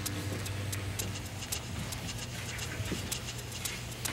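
Barbers' scissors snipping in quick, irregular clicks over a low steady hum.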